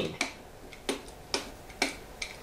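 Pen tip tapping and clicking on a whiteboard surface while a word is handwritten: four short, sharp clicks about half a second apart.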